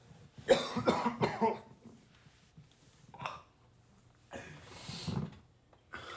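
A man coughing: a hard fit of several coughs about half a second in, then single further coughs around three seconds and near five seconds.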